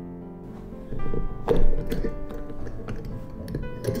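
Glass clip-top jar being opened: clicks and clunks of the wire clasp and glass lid, loudest about one and a half seconds in and again just before the end, over background music.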